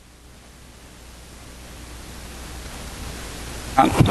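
Steady hiss of recording and room noise with a low hum beneath it, slowly growing louder during a pause in speech; a man's voice comes back at the very end.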